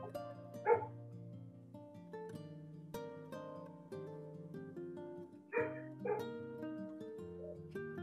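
Soft background music of gently plucked guitar notes. It is broken by three short, loud calls: one about a second in and two close together near six seconds.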